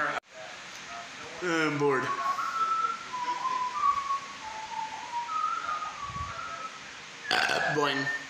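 A person whistling a short tune, a single clear note stepping between a few pitches for about four seconds. Just before it comes a short vocal sound that slides down in pitch.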